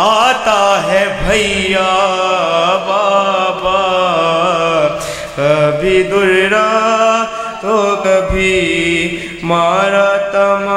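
Noha recitation: a male voice chanting an Urdu lament in long, wavering held notes, with short breaks between phrases about halfway through and near the end.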